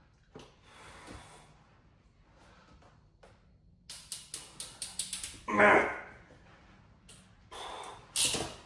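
A hand PEX crimping tool clicks quickly about eight times as it is squeezed shut on a 3/4-inch crimp ring, followed by a short, loud strained grunt: these rings take a hard push to crimp.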